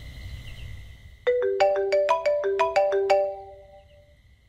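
A mobile phone ringtone: a short melody of about a dozen quick, bright, marimba-like notes, starting a little over a second in and lasting about two seconds, over a faint low rumble.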